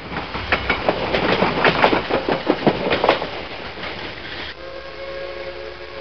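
Railroad train: a rapid clickety-clack of wheels over rail joints for about four and a half seconds, then a steady multi-note train horn sounds and holds.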